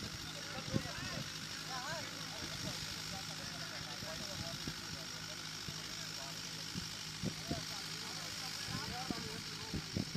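Faint, distant voices of men talking on the field, over a steady background hiss.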